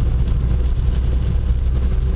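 Steady low rumble of a car's engine and tyres heard from inside the cabin while driving on a wet road.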